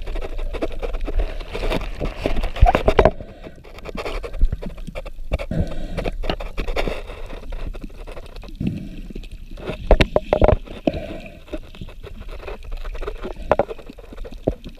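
Muffled underwater sound picked up through a submerged camera's waterproof housing: water sloshing and gurgling, with irregular knocks and rubs against the housing, the loudest a cluster about ten seconds in.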